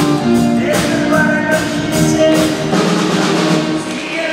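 Live rock-and-roll band playing with a steady drum-kit beat, upright string bass, electric guitars and held tenor-sax notes.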